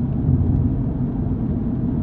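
Steady low road and engine rumble inside the cab of a Ford vehicle driving at speed.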